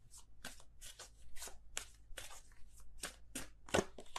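Tarot deck being shuffled by hand: a quiet, irregular run of short card slaps and flicks, about three a second.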